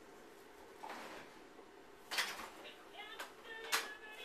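Knocks and clicks of a baby's hands on a plastic toy activity table, loudest about two seconds in and again near the end, with brief high-pitched tones in the last second.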